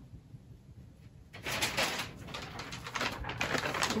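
Paper rustling and crinkling as a sheet of pattern paper is picked up and handled, starting about a second and a half in after a quiet moment.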